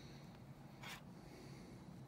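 Hand sewing a small felt plush toy: one brief soft swish of thread or fabric about a second in, over very quiet room tone.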